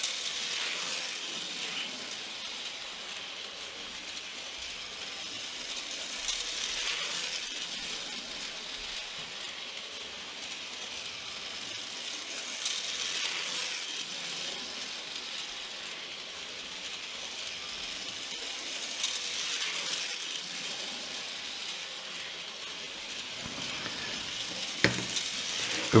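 Märklin 3021 (V200) H0 model diesel locomotive running: a steady high whir from its motor and gearing that swells and fades about every six to seven seconds.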